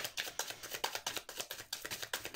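A deck of tarot cards being shuffled by hand: a fast, irregular run of soft card-on-card clicks.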